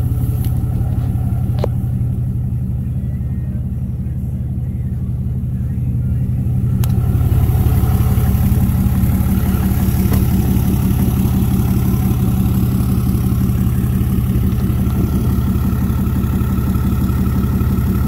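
A 6.7-litre Cummins turbodiesel in a chipped and emissions-deleted Ram 2500, idling steadily. It gets louder about seven seconds in, after a sharp click.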